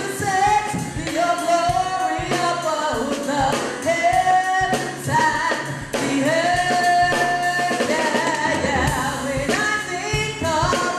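A woman singing a gospel praise song into a microphone, holding long notes that slide in pitch, over a steady backing of drums and bass.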